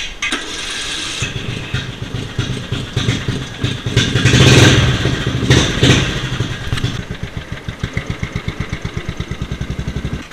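Murray riding lawn mower engine catching about a second in and running. It revs up in the middle, then settles into an even, rapid thumping.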